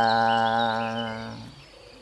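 A man's voice holding one long, level hesitation vowel ("ehhh") mid-sentence for about a second and a half, then trailing off. Faint bird or insect chirps sound behind it.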